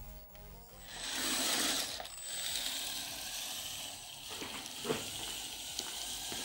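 Electric RC crawler's motor and geared drivetrain whirring as it drives off across a tiled floor, loudest about a second in, with a couple of light knocks near the end.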